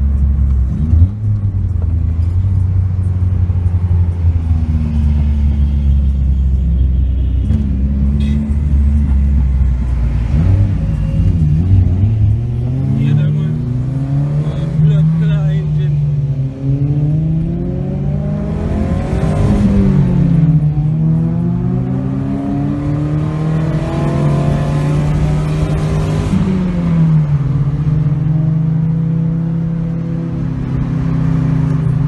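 Car engine heard from inside a moving car's cabin: a steady low drone at first, then from about ten seconds in the engine pitch climbs and drops several times as the car accelerates through the gears.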